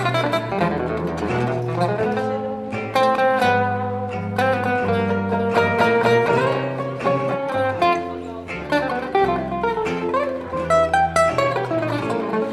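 Instrumental gypsy jazz: a Selmer-Maccaferri-style oval-hole acoustic guitar plays quick plucked single-note lines over a plucked upright double bass walking beneath.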